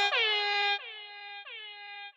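The song's closing synth note, one horn-like pitched tone repeating as echoes about every half second. Each repeat slides down slightly into pitch, and the repeats get quieter, dropping off about a second in.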